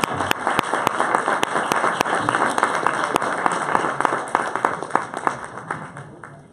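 Audience applauding, a dense patter of claps with a few sharp nearby claps standing out; the applause dies away over the last couple of seconds.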